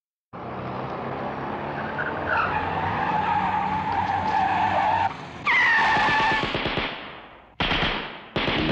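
Car engine running hard with tyres squealing as the car accelerates. There is a brief drop about five seconds in, then a louder falling squeal, and the sound fades away before music cuts in near the end.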